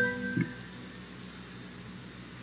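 Organ chord held and then released about half a second in, dying away into faint room tone.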